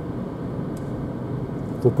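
Steady road and tyre noise inside the cabin of a Renault ZOE electric car at around 55–60 km/h, an even hiss with no engine note. A man's voice starts near the end.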